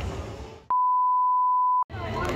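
A single steady electronic beep at one high pitch, lasting about a second and cutting in and out sharply over dead silence: a bleep tone edited into the soundtrack. Background noise fades out just before it.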